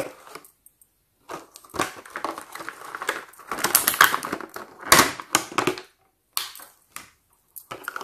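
Clear plastic blister packaging crackling and crinkling as it is pulled apart by hand, with sharp snaps about two and five seconds in, then a few light clicks near the end.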